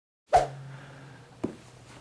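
Two knocks in a quiet room over a low steady hum: a sharp one just after the start and a softer one about a second later, from a person moving into place at a leather ottoman.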